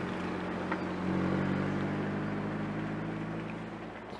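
Car engine running at a steady pitch, a low drone that grows louder about a second in and then slowly fades.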